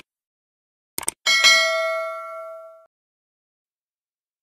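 Subscribe-button sound effect: two quick mouse clicks, then a bright bell ding that rings out and fades over about a second and a half.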